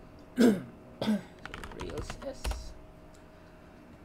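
A man with a cold coughs twice, hoarsely, then types a quick run of keystrokes on a computer keyboard.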